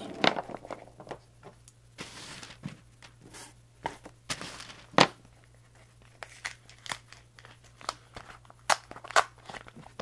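A taped paper padded mailer being handled and pulled open: irregular crinkling and tearing of paper and tape with sharp crackles, the loudest about five seconds in.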